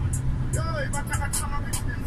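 Steady low rumble of a heavy truck's engine and road noise, heard from inside the cab as it rolls slowly along, with music and a voice over it.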